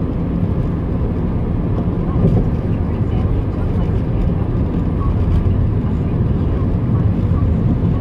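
Steady low rumble of a moving vehicle heard from inside the cabin: road and engine noise.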